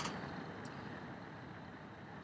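Faint, steady room noise and microphone hiss, with one small click a little over half a second in.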